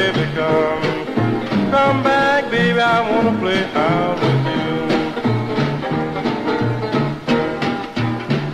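1950s blues record: a guitar playing over a repeating bass line with a steady beat.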